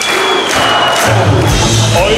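Live pop band striking up a song over a cheering concert crowd: the bass and drums come in about a second in.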